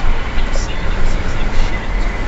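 Road and engine noise inside a moving car's cabin: a steady low rumble with a hiss of tyres and air over it.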